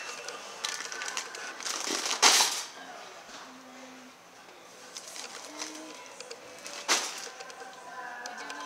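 Wire shopping cart rattling as it is pushed along a store aisle, with two sharper clatters, about two seconds in and again near the end.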